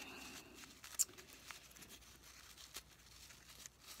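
Faint rustling of a small layered thin-paper flower as its layers are pulled apart and fluffed between the fingers, with one sharp click about a second in.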